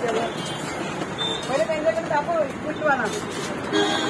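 Indistinct chatter of several voices over steady street traffic noise.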